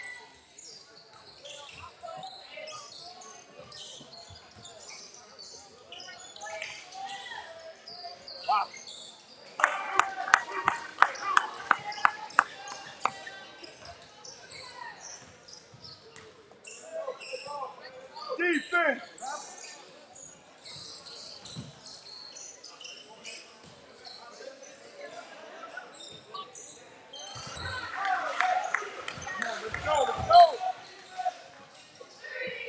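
Basketball game sounds in a gymnasium: a ball being dribbled on the hardwood floor, shoe squeaks and crowd voices echoing in the hall. About ten seconds in, a burst of sharp clapping and cheering lasts a few seconds.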